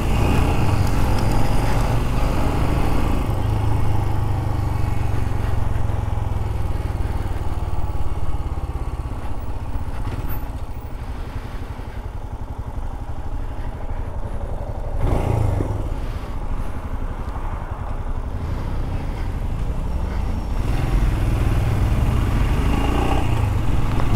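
Royal Enfield Scram 411's single-cylinder engine running at low speed in city traffic, heard from the rider's seat. It is quieter through the middle and louder again near the end as the bike pulls away.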